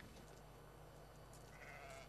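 Near silence, with one faint, short sheep bleat near the end.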